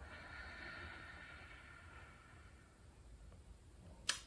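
Near silence: room tone, with a faint, slow exhale through the nose that fades out over the first two seconds.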